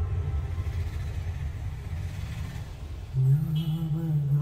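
Film trailer soundtrack: a deep rumbling bass drone that thins out, then a held low note with overtones coming in about three seconds in.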